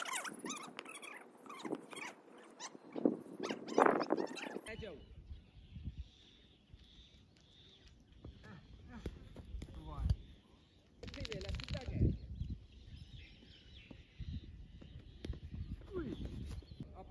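Men's voices calling out across a cricket field for the first few seconds, then a low uneven rumble with a few short knocks and a brief louder burst about eleven seconds in.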